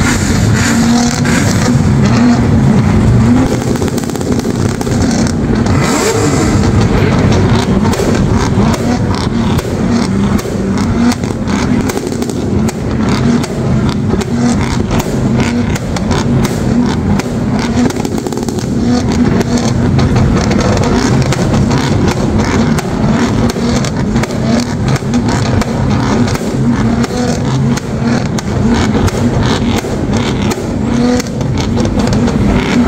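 Modified cars' engines held on two-step launch-control rev limiters, a loud rapid crackle of exhaust pops and bangs over the running engines.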